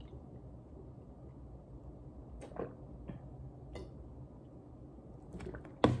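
Faint swallowing as someone chugs water from a plastic bottle, a few soft clicks over a low steady room hum.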